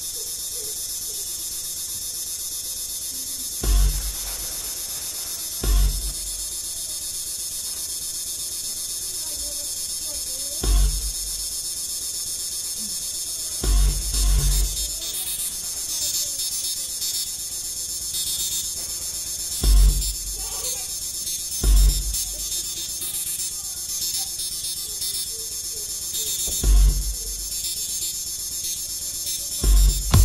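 Electronic soundtrack music for a contemporary dance piece: a steady high buzzing drone, broken by deep bass thuds every few seconds, about eight in all, spaced unevenly.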